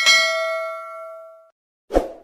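Notification-bell sound effect: a single bright bell ding that rings and fades away over about a second and a half. A short dull thump follows near the end.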